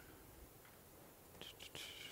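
Near silence: room tone, with a faint whispered voice starting about one and a half seconds in.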